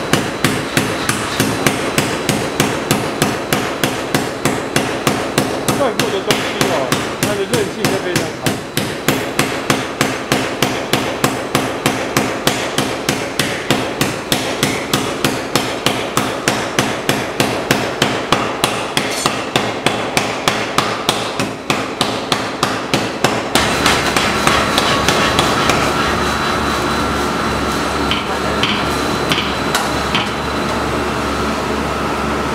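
Mechanical power hammer forging a red-hot steel bar, striking in rapid, even blows of about three a second. About three-quarters of the way through the blows stop and a steady machine hum remains.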